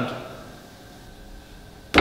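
A man's voice trails off into a quiet pause of room tone, ended near the close by a single sharp click as the pipe organ's first chord begins to sound.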